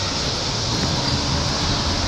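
Steady background noise: a constant even rushing with a low hum underneath, unchanging throughout.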